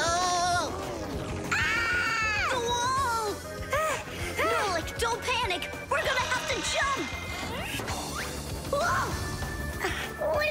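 Cartoon soundtrack: background music under a run of short wordless cries and exclamations from the characters, with crashing sound effects as the toy helicopter careens out of control.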